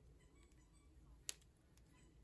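Near silence: room tone, with one small click a little past halfway, from rubber loom bands being worked on a metal crochet hook.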